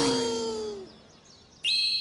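Cartoon sound effects: a falling pitched tone fades away over the first second, then a bright, high, steady 'ping' twinkle comes in suddenly near the end. It is the stock twinkle effect for something launched off into the distance and vanishing as a star.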